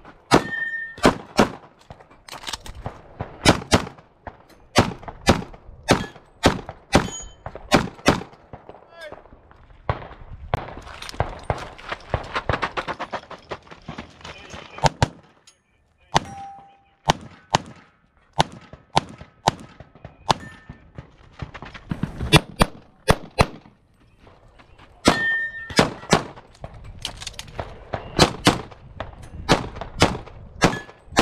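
Pistol fire on a practical-shooting stage: quick strings of shots, mostly in pairs a fraction of a second apart. A stretch of about five seconds in the middle has no shots.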